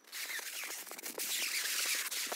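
Clear plastic stretch wrap rustling and crinkling as it is handled: a steady hissing rustle with a few faint sliding squeaks.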